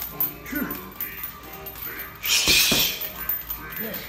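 A boxer's sharp hissing exhale with a punch a little past two seconds in, over background music.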